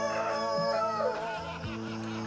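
A rooster crows once, a wavering call lasting about a second at the start, over background music with steady low notes.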